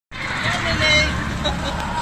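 Go-kart running on an indoor track as it drives past, with people's voices over it.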